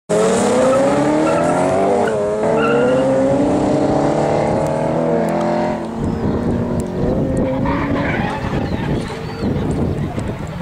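Two drift cars launching together, engines revving hard and climbing in pitch, with a gear change about two seconds in. From about six seconds the clean engine note gives way to a rougher noise of skidding tyres as the cars drift away down the track.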